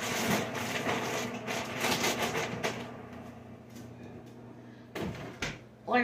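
Rustling and handling noise as frozen food, a bag of fish sticks, is put away in a kitchen freezer, busy for the first few seconds and then easing off. Two sharp knocks about five seconds in, like the freezer door being bumped or shut.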